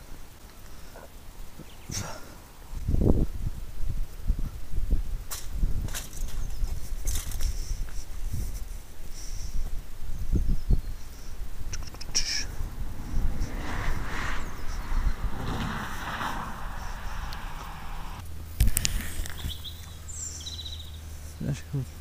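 Irregular low thumps and rustles of a handheld camera being carried on a walk, with a few short bird chirps near the end.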